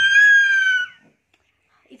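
A baby's high-pitched squeal, one long held note lasting about a second.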